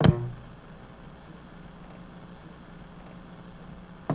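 A short musical sting: one sharp, loud hit at the start that rings away within about half a second, leaving a faint steady low hum.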